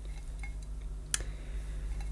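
A single light metallic click about a second in, as the chrome vacuum-cleaner wand tubes are handled and knock together, over a faint low steady hum.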